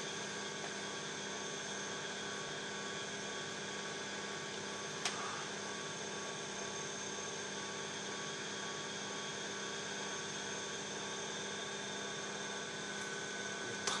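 A steady mechanical hum with several faint constant tones, and a single short click about five seconds in.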